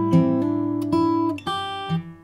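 Steel-string acoustic guitar with a capo at the third fret, played fingerstyle: a short chord-change passage of plucked notes, a new note about every half second. The high E string is stopped short rather than left ringing over the change, which loses the link between the two chords.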